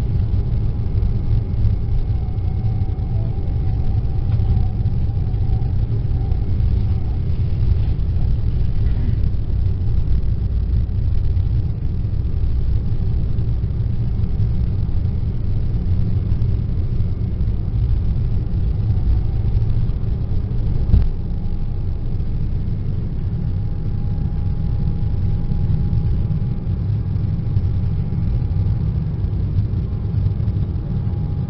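Embraer E190's turbofan engines at takeoff thrust heard from inside the cabin during the takeoff roll: a loud, steady low rumble with a faint high whine over it. A single knock comes about two-thirds of the way through, after which the rumble eases a little as the jet lifts off.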